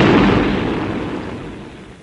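Film explosion: the blast's rumble dying away steadily over about two seconds, fading to a faint hiss by the end.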